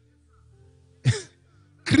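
Faint held music notes under a pause in the preaching, then about a second in one short, falling vocal burst from a man on the microphone, like a cough or grunt; speech starts again near the end.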